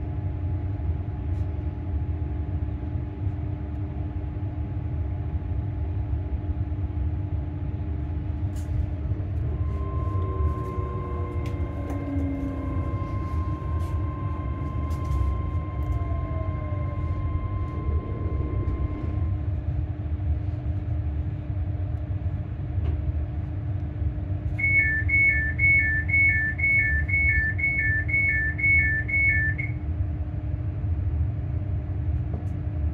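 Passenger train running with a steady low rumble heard from inside the carriage, with a whine that falls in pitch between about 10 and 19 seconds in as the train slows. Near the end a rapid high-low alternating beeping starts, the door warning tone as the train comes into a station.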